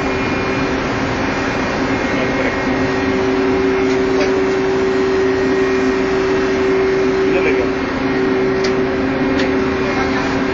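Steady, loud engine-room noise from a running marine diesel, a constant drone with two humming tones under a wide hiss.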